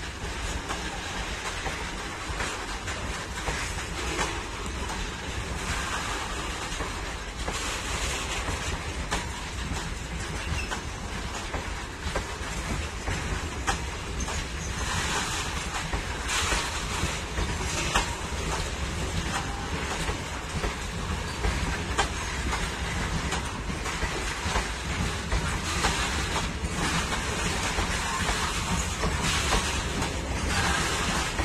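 A freight train's wagons rolling past on the adjacent track: a steady clatter of steel wheels on the rails.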